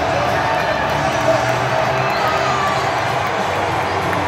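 Baseball stadium crowd: many fans cheering and shouting at once, a steady roar of voices, with music playing over it.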